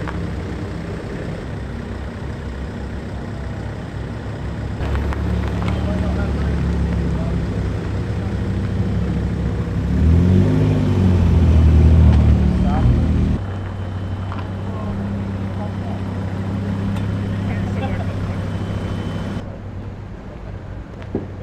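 Car engines running at low speed as cars move about a car park, with a rise and fall in engine pitch and a swell in level about ten to thirteen seconds in.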